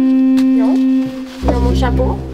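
Organ holding a steady note, then about one and a half seconds in a deep bass pedal note sounds under it, with voices over the top.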